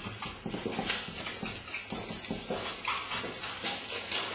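Felt-tip marker scribbling fast on paper taped to a wall, a dense run of short, irregular strokes, several a second.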